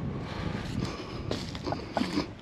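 A steady, even rush of outdoor background noise with a few faint soft knocks through it.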